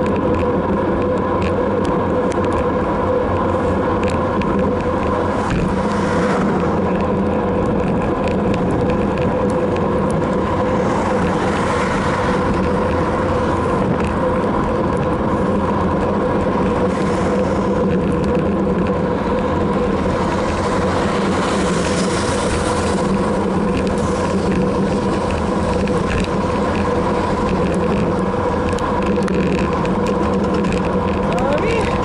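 Steady rushing wind and road noise on a bicycle-mounted camera while riding, with a constant hum underneath.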